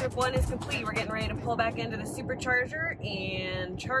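Speech: a woman talking inside a car.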